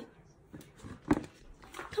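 A single short knock about a second in, against quiet room tone.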